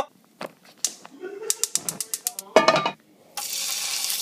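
Gas stove burner igniter clicking rapidly, about ten clicks a second, as the burner knob is turned toward light. Near the end there is a steady hiss.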